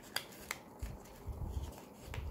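Faint handling of a square of origami paper as it is folded and creased by hand on a hard board: two sharp crackly clicks in the first half second, then soft dull thumps as fingers press the fold flat.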